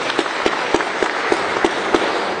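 Audience applauding, with single claps close by standing out sharply about three times a second.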